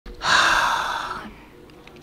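A man's long breathy sigh close to the microphone, about a second long and fading out.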